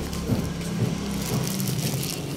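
An engine idling with a low, steady drone.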